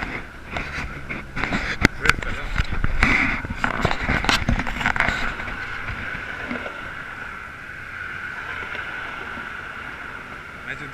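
Sharp knocks and bumps from handling gear close to the microphone, mostly in the first half, over steady road-traffic noise.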